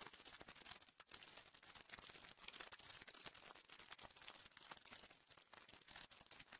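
Faint, irregular clicks and smacks of chewing as fries and a burger are eaten, with no talking.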